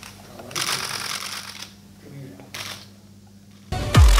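Dense rapid clicking or rattling in a burst lasting about a second, then a shorter burst a second later, over faint murmur and a low steady hum.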